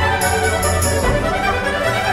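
Chamber ensemble of strings, winds, horn, guitar and percussion playing a lively Baroque dance movement, with crisp high strokes marking the beat at about four a second in the first second.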